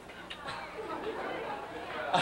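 Indistinct chatter of several voices in a large hall, with no clear words.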